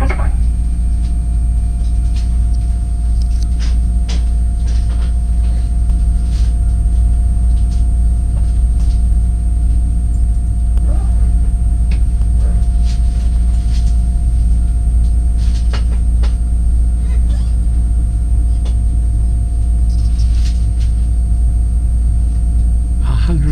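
Passenger train running slowly into a station, heard from inside the carriage: a steady low rumble with a few faint steady tones over it and scattered short clicks and knocks from the wheels on the track.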